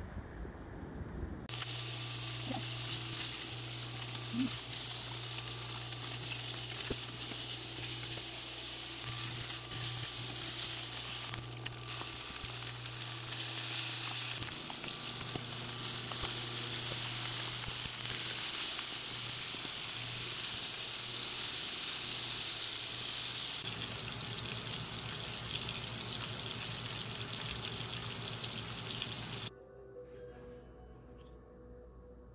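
Pork belly sizzling as it fries in a pan on an induction cooktop: a steady hiss of spitting fat over a low hum, starting about a second and a half in.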